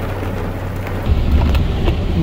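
Heavy rain pouring down over a vehicle's low engine hum; about a second in, a deeper low rumble swells up and the whole sound gets louder.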